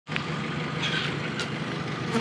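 A steady low hum and rumble of outdoor sound, cutting in suddenly, with a few faint clicks over it.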